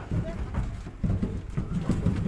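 A string of low, hollow knocks and thumps, with voices talking over them.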